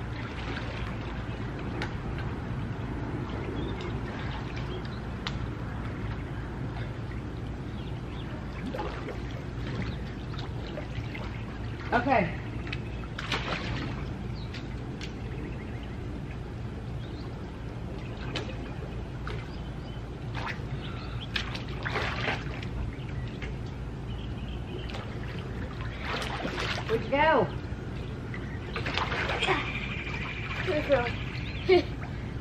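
Swimming pool water sloshing and trickling as people swim, over a steady low hum. Short distant voices call out a few times.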